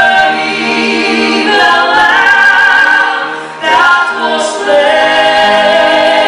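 Mixed gospel choir of men and women singing in harmony, holding long sustained notes. The sound dips briefly a little past halfway at a phrase break, then the voices come back in full.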